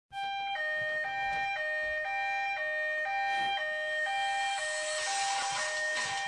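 Two-tone hi-lo siren switching evenly between a higher and a lower pitch about twice a second, with a hiss building up over the last second or so.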